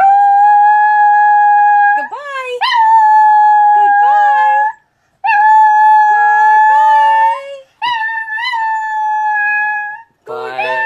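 A Chihuahua howling: long, steady, high-pitched howls held about two seconds each, with a short break about halfway through. A lower voice joins in at times with short rising and falling calls.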